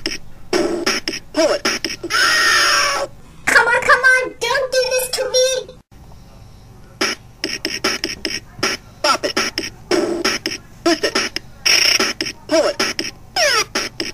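Bop It electronic toy's game audio: a fast rhythmic beat of short electronic sound effects and clipped voice calls. It breaks off briefly about six seconds in, then the beat starts up again.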